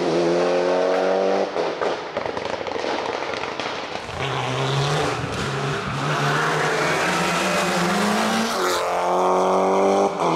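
Mitsubishi Lancer Evo IX's turbocharged four-cylinder engine at full throttle up a hill, the revs rising, falling with gear changes and lifts, and climbing again near the end. There are a few sharp cracks as the revs drop about a second and a half in.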